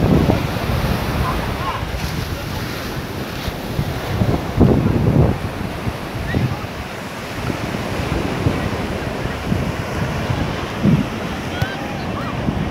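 Surf washing onto a sandy beach, with wind rumbling on the microphone in irregular gusts, strongest about five seconds in.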